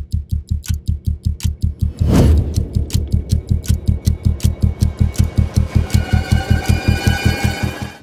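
Outro music: a fast pulsing bass beat, about five pulses a second, with ticking clicks on top. A swelling whoosh about two seconds in is the loudest moment, and held higher tones come in near the end.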